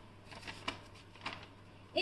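A quiet pause in the narration: faint room tone with a steady low hum and two faint clicks about half a second apart.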